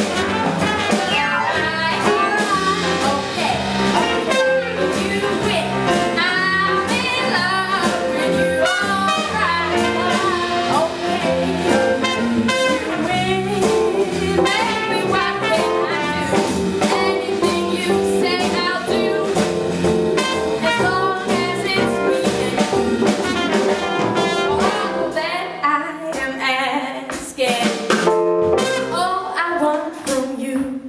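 Live jazz band playing an instrumental section: a trumpet plays a solo line over electric guitar, piano, bass and drums. The playing thins out into separate hits near the end.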